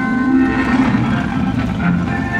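Music with held melody notes, playing over the steady running noise of a car on the road.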